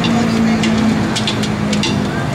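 Contemporary gamelan ensemble playing: a held low drone, sinking slightly in pitch, with sharp strikes scattered over it.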